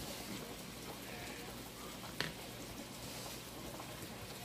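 Pork chops frying in a skillet, a faint steady sizzle, with one light click about two seconds in.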